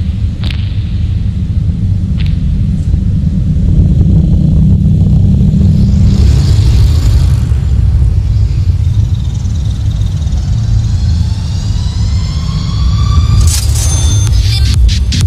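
Electronic dance track playing: a heavy, steady deep-bass rumble. A whooshing noise swell comes about six seconds in, and rising synth tones climb through the last few seconds as a build-up.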